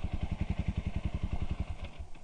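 Single-cylinder four-stroke engine of a 2016 Suzuki RM-Z250 dirt bike running at low revs off the throttle, an even putting beat that fades out near the end.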